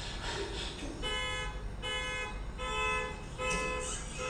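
Car alarm honking in a steady repeating pattern: four pitched honks, each about half a second long and roughly 0.8 s apart, starting about a second in.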